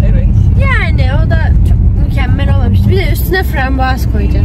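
Steady low road and engine rumble of a car driving, heard from inside the cabin, under a voice talking.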